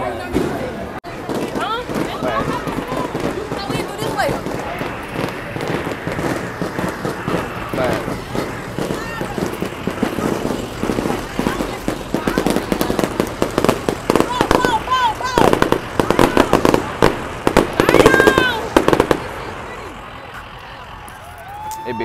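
Firecrackers popping in quick, irregular strings, thickest over the last third, with young people shouting and screaming over them. The popping stops a couple of seconds before the end.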